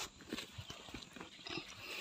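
Leaves and twigs of a cut fruiting branch rustling as it is picked up and handled: a run of irregular rustles and small clicks.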